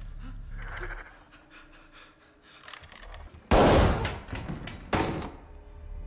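Two loud pistol shots from a film soundtrack, about a second and a half apart. The first comes about halfway through and trails off over half a second; the second is sharper and shorter.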